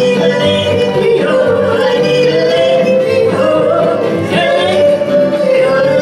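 Two women singing a country song together into microphones, backed by acoustic guitars and a steel guitar.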